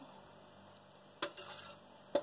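A small metal pot clinks sharply once against the rim of a glass jar about a second in, followed by a brief faint scraping, as the last of the syrup is poured and drained into the jar.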